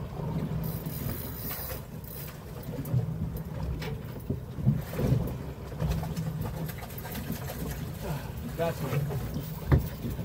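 Wind on the microphone and water moving around a small boat's hull, with scattered short knocks.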